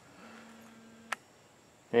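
Quiet, with a faint steady hum and a single sharp click a little over a second in.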